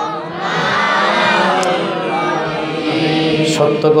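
A man's voice chanting into a microphone in long, wavering melodic phrases: the sung delivery of a Bengali Islamic sermon.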